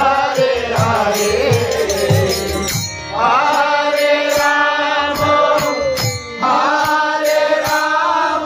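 Devotional kirtan: a harmonium plays under voices singing a chant in long held phrases, with brief breaks about three and six seconds in. A beat of low strokes runs under the first phrase.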